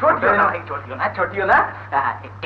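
Speech only: a man talking, over a steady low hum.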